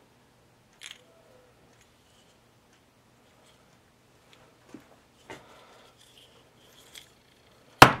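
Small carburetor parts being handled on a workbench: a few scattered light clicks and knocks, then a sharp knock near the end as the carburetor body is picked up, over a faint steady hum.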